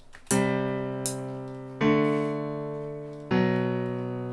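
FL Studio's FL Keys software piano playing back a chord progression from the piano roll: three block chords, each struck about a second and a half apart and left to ring and fade.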